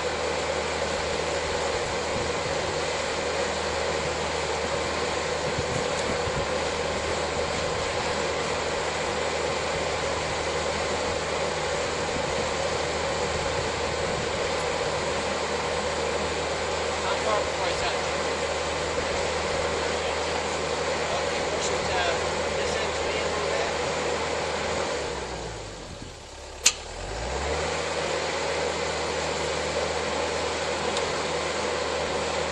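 Excavator diesel engine running steadily. About 25 seconds in, its note drops and then comes back up, with one sharp click in the dip.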